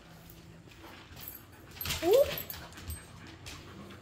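A dog gives one short, rising whine about halfway through, with only faint soft knocks around it.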